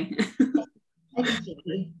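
Short broken fragments of a person's voice over a video call, with a gap of under half a second in the middle.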